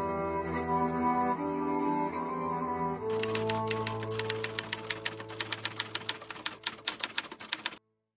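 Slow, sad bowed-string music led by cello. About three seconds in, a typewriter key-click sound effect joins it, rapid even clicks about six or seven a second, as text types out. Both cut off suddenly just before the end.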